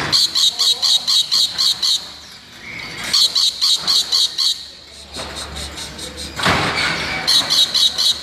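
Rainbow lorikeet calling in three runs of short, shrill, high notes repeated about five times a second, with a harsher, rasping burst about six and a half seconds in.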